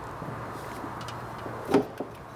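Faint handling clicks as a hand works the plastic electrical connector of a Vespa's fuel level sender, over a steady low background hum. A short vocal sound comes near the end.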